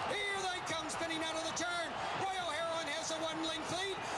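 Speech: a man's voice calling a horse race, talking on without a break.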